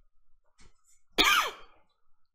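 A single short cough about a second in.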